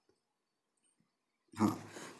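Near silence for about a second and a half, then a man briefly says "haan" near the end.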